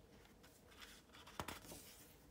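Near silence, then the page of a picture book being lifted and turned by hand: a short sharp paper click with a few faint rustles about one and a half seconds in.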